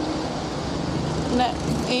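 Steady road traffic noise of a city street, with no distinct event in it; a voice says a single word near the end.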